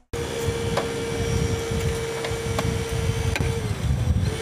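A motor running with a steady hum that dips in pitch and stops about three and a half seconds in, over an uneven low rumble, with a few sharp metallic clicks.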